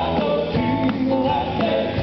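Southern gospel vocal quartet singing in harmony, live, over a band with electric guitar and drums keeping a steady beat.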